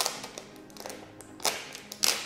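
Faint background music under a few sharp clicks and taps as a smartphone is handled over its cardboard box: one at the start, one about one and a half seconds in, and one at the end.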